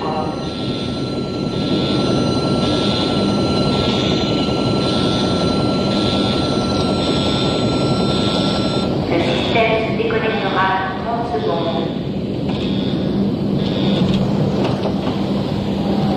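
Control-room warning alarm beeping about once a second over a loud, steady machine rumble, signalling an overheating system that is counting down to automatic shutdown. A steady high tone under it stops about nine seconds in.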